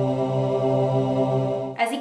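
One long, steady, low chant-like vocal note, held at a single pitch and cut off just before speech resumes; an edited-in sound effect.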